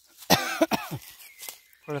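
A person coughs: one short, loud burst about a third of a second in. Near the end the person starts to speak.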